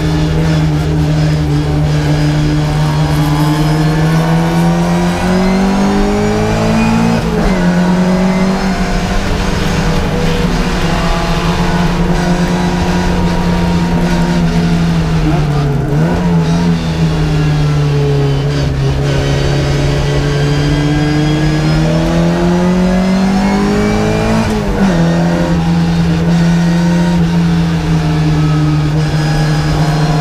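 Classic Mini race car's BMC A-series four-cylinder engine at racing speed, heard from inside the cabin. Its note falls and climbs again through the corners, with sudden drops in pitch at gear changes about seven and twenty-five seconds in.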